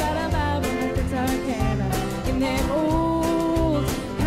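A woman singing a country song with a live band, guitar and bass underneath, holding one long note over the second half.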